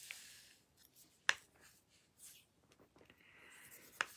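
Faint scratchy rubbing of a shading stick on a paper drawing tile, with one sharp click about a second in.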